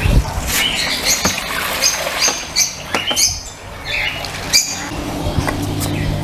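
Handling of a garden hose and plastic bucket: a knock right at the start, then a few clicks, with a string of short high-pitched squeaks about every half second through the middle.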